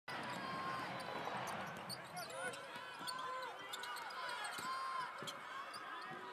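A basketball bounced on a hardwood court, with sneakers squeaking sharply over the floor and the chatter of a crowd in a large arena.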